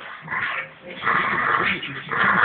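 Bulldogs play-wrestling and vocalising: a short burst of dog noise about half a second in, then a longer one from about a second in.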